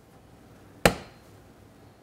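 A single sharp plastic pop a little under a second in: a retaining clip letting go as the side body panel of a Can-Am Spyder RT is pulled loose at its rear pull point.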